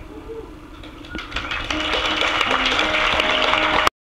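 Audience applause breaking out about a second in and swelling to a steady clatter over the last held notes of the song; the recording cuts off abruptly just before the end.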